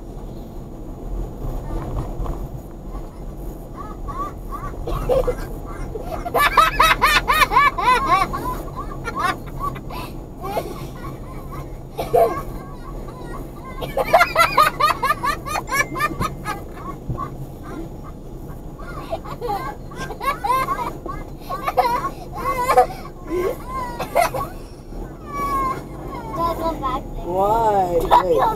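Voices in a moving car's cabin laughing and making high, wavering vocal noises in two main bursts, about six and fourteen seconds in, over the steady low hum of the car on the road.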